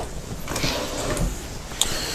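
Low handling noise, with one sharp click near the end.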